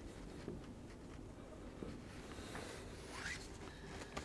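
Faint short scratching strokes of writing on a blackboard.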